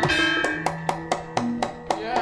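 Javanese gamelan music accompanying the dance: a quick run of struck, ringing metallophone notes with drum strokes among them.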